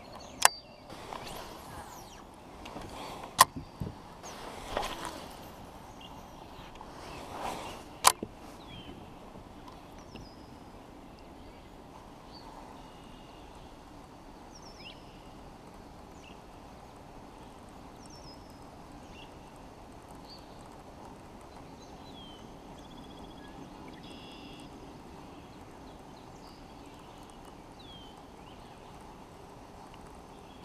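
Fishing rod and baitcasting reel being handled during casting and a retrieve: three sharp clicks and a few short swishes in the first eight seconds. After that the reel turns slowly and quietly under a faint steady hiss, with faint high chirps behind it.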